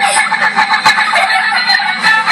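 Battery-powered musical plush Easter chicken toy playing its electronic song, a fast, evenly pulsing tune.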